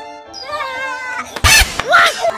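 A drawn-out pitched animal call that falls slowly in pitch for about a second, with music, then a sharp knock about a second and a half in.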